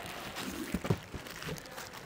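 Plastic wrapping rustling quietly as a wrapped scooter seat is lifted out of its cardboard box and foam packing, with a few soft taps near the middle.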